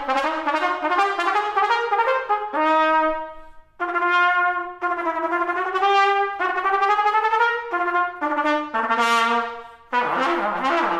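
Solo trumpet playing a series of notes, with a short break for a breath a little past three seconds, then longer held notes and a quicker run of notes near the end.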